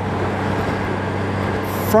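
Steady wind and road noise from a Honda Gold Wing motorcycle cruising at highway speed, with a low, even hum from its flat-six engine underneath.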